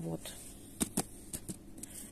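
About five light, sharp clicks and taps over roughly a second, from hands handling a plastic plant pot of loose potting soil and brushing soil off the fingers.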